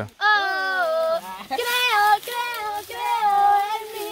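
A young female voice singing unaccompanied, in a few long held high notes that slide between pitches.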